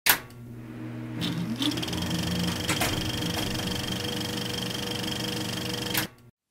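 Channel intro sound under the title card: a sharp hit, then a steady, rapid mechanical clatter with several held tones, a few sharp strikes and a short rising glide, cutting off suddenly at the end.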